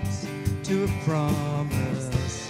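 Live country-style gospel song: a woman singing into a microphone over a band with a steady beat.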